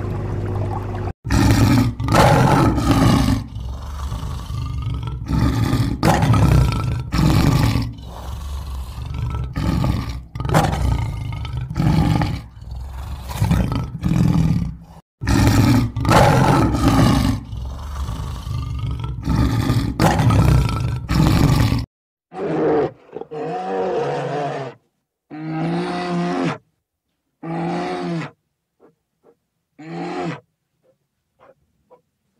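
Male lion roaring over and over in loud, rough calls about a second apart. From a little past the two-thirds mark this gives way to four shorter pitched animal calls with pauses between them.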